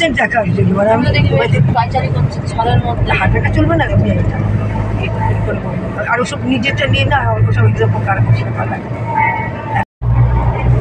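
Steady low drone of a car's engine and road noise heard from inside the moving car's cabin, under people talking. The sound cuts out for a moment near the end.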